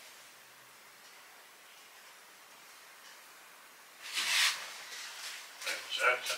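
Near silence: quiet room tone, broken about four seconds in by a brief hissing rustle lasting about half a second, with a softer one just after.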